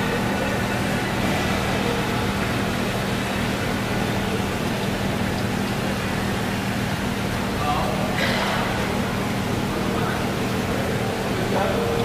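Water splashing and churning as a crowd of koi thrash at the surface, over a steady low hum and indistinct background voices.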